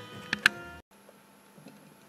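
Faint background radio music with two sharp clicks, cut off abruptly under a second in, then near silence: room tone.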